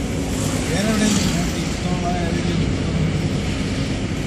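Steady low rumble of road and engine noise heard from inside a moving car's cabin, with faint voices talking under it.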